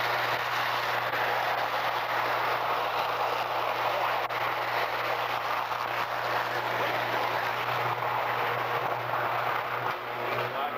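Steady, loud roaring hiss of a sustained electrical arc and fire at a power substation, with a low hum underneath, from a short-circuit fault on the lines feeding the transformer bank.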